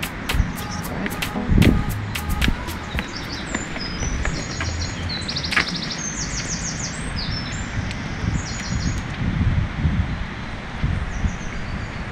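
Songbirds singing in short high chirps and quick trills, mostly from about three seconds in to nine seconds, over a low rumble. There are sharp footstep clicks in the first few seconds.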